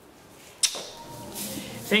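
Faint room noise with a single sharp click a little over half a second in, then low noise until a voice begins at the very end.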